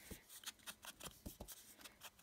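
Foam ink blending tool dabbed and swiped over an ink pad and the edges of a die-cut cardstock border: faint, quick soft taps, about six or seven a second.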